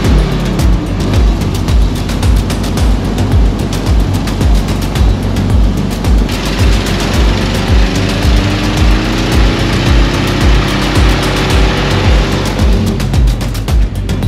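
Background music with a steady, evenly repeating bass beat.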